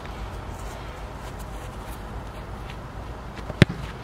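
A single sharp thud near the end as a boot kicks an Australian rules football, over a steady low rumble.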